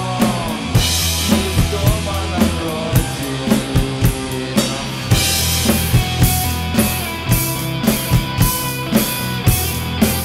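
Rock song's instrumental passage with a drum kit: kick and snare in a steady beat under bass and guitar. A cymbal wash comes in about a second in, and from about five seconds in cymbals ring on every beat.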